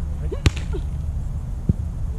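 A volleyball struck hard by a hand: one sharp smack about half a second in, then a duller, lower thump of the ball being played or landing near the end, over a steady low rumble.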